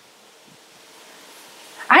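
Faint, even background noise in a pause between a woman's amplified words. Her voice comes back in just before the end.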